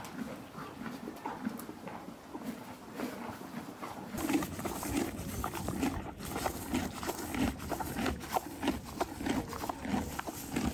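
Horse chewing hay, heard close up: repeated crunching and grinding in a steady rhythm of chews, louder and closer from about four seconds in.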